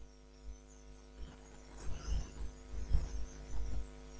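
Steady electrical mains hum in the recording, a stack of constant low tones, with a few soft low thumps scattered through it.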